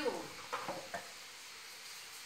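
A few short scraping taps about half a second to a second in, from whiteboard markers and an eraser being handled at a plastic whiteboard easel.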